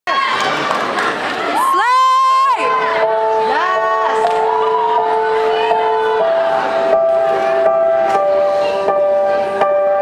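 Slow music with long held notes; about two seconds in the pitch slides up and back down. Audience cheering sits under the opening second or so.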